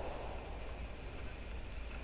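Faint, steady outdoor background noise: an even hiss with a low rumble underneath and no distinct events.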